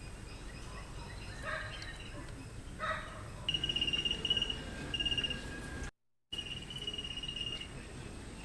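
Birds calling: scattered chirps, then rapid trilled calls held for a second or two at a time, broken by a brief dropout in the audio about six seconds in.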